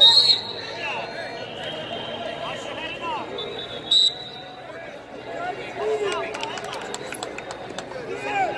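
Referee's whistle blown in two short, shrill blasts, the louder one at the very start and another about four seconds in as the bout restarts. Scattered shouts and calls from coaches and spectators carry on underneath in the echoing arena.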